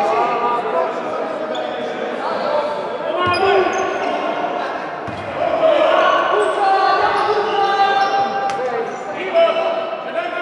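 Indoor basketball game in a reverberant sports hall: a basketball bouncing on the hardwood court a few times, mixed with players' and spectators' voices calling out.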